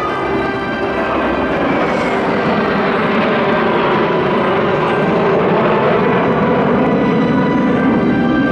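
Kawasaki T-4 jet trainers flying past in a formation of six: their jet noise swells over the first couple of seconds and then holds loud. A high whine falls in pitch about two seconds in.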